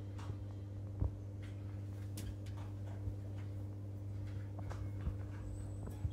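Kegland BrewZilla 3.1.1's recirculation pump humming steadily while wort pours from the return pipe onto the foamy mash. Small irregular clicks and splashes of the falling liquid and popping bubbles sound over the hum, one a little louder about a second in.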